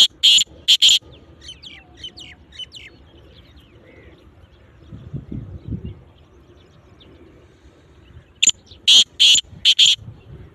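Black francolin calling loudly twice: a run of about four sharp, high notes at the very start, and another run of about five notes near the end. Faint chirps of small birds come in between.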